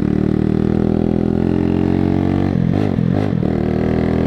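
125cc cruiser motorcycle engine running steadily, its note wavering up and down for about a second, a little past halfway.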